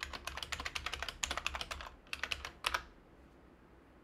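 Computer keyboard being typed quickly: a fast run of keystrokes for about two seconds, a short pause, then a few more strokes that stop near three seconds in, as a password is typed at a terminal prompt.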